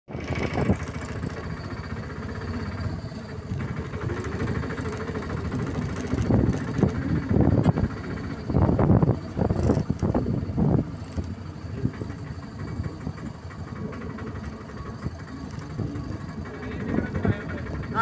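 People talking in bursts through the middle and again near the end, over a steady low rumble.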